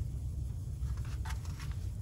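A picture-book page being turned, with a faint paper rustle about midway, over a steady low room hum.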